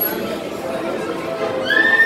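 Carousel music playing over crowd chatter, with a long high held tone starting near the end.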